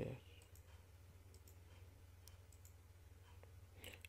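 Near silence with a few faint computer mouse clicks, scattered and sparse, over a steady low electrical hum.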